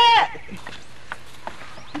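A person's loud, drawn-out vocal cry in the first half-second, its pitch rising and falling, then a quieter stretch with a few faint ticks.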